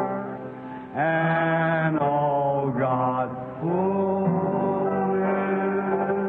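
A slow hymn being sung in long held notes that slide from one pitch to the next, with short breaths between phrases, on an old recording with a muffled, narrow sound.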